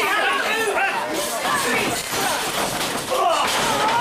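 A wrestler's body hitting the ring canvas with a slam, among shouting voices from the crowd around the ring.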